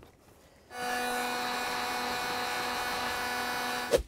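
Electric heat gun running, a steady blowing hiss with a fixed motor whine, switched on abruptly a little under a second in and cut off near the end, as it shrinks heat-shrink tubing over a crimped wire connector.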